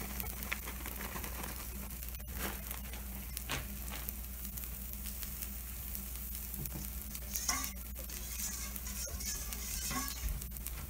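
Takoyaki batter sizzling on a hot takoyaki plate under a layer of cabbage and shredded cheese, with a few small clicks.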